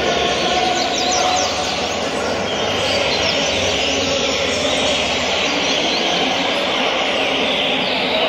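Several caged coleiros (double-collared seedeaters) singing at once, many short overlapping chirps and trills over a steady background noise.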